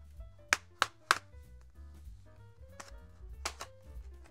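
Sharp clicks of a laptop's plastic bottom-cover clips snapping loose as a plastic pry pick works along the case edge: three in quick succession in the first second or so, and another near the end.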